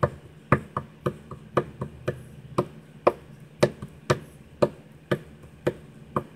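A hand tapping out a steady beat on a hard desk surface, about two sharp taps a second with lighter taps in between, in time with a song.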